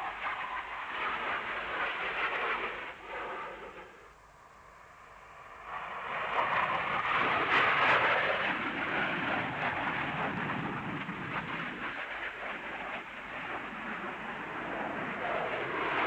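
Jet noise of a Panavia Tornado flying low, its twin Turbo-Union RB199 turbofans. The noise fades to a lull about four seconds in, then swells to its loudest as the jet passes close at around seven to eight seconds, and stays loud after that.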